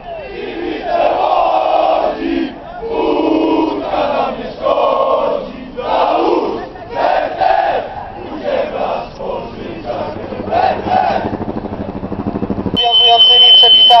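Large crowd of football supporters chanting and shouting in phrases of a second or two with short breaks between. Near the end it grows louder, with a high steady tone over the crowd.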